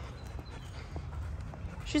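Footsteps on a paved path over a low rumble, with a few faint, soft ticks.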